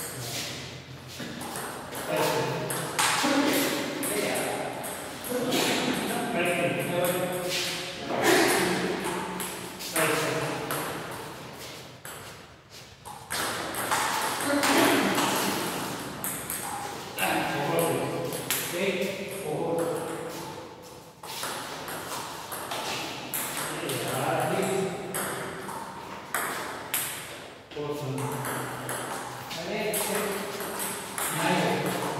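Table tennis ball clicking off the bats and the table in rallies, with people talking over it.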